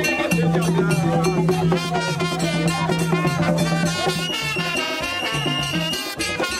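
Haitian Vodou music: drumming and percussion with singing. A high note is held from about four seconds in.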